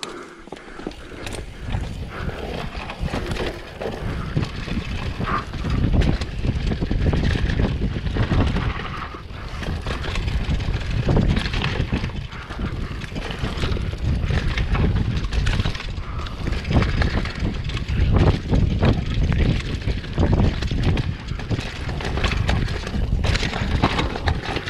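Downhill mountain bike descending a dry dirt trail at speed: tyres crunching over dirt and ruts, with constant rattling and knocking from the bike over bumps. Wind buffets the body-mounted camera's microphone as a heavy rumble underneath.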